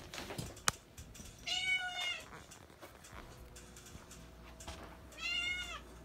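Cat meowing twice, two arched calls a little over three seconds apart, with a sharp click shortly before the first.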